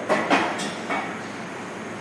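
Kitchen clatter: about four quick knocks and clanks of metal kitchenware in the first second, then a steady low room hum.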